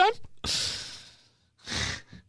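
A man's sigh: a long breathy exhale about half a second in that fades away, then a short intake of breath near the end.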